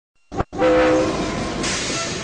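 Steam locomotive whistle sounding a steady, chord-like blast from about half a second in, after a brief blip, with a hissing rush of steam joining near the end.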